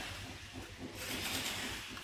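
Quiet room hum with faint rubbing and handling noise from fingers moving over a bicycle's handlebar stem.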